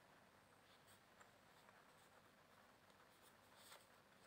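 Near silence, with faint rustling and small ticks of a tarot deck being shuffled by hand, a little more audible near the end.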